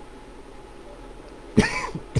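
A man coughs once, sudden and loud, about one and a half seconds in, over a faint steady background.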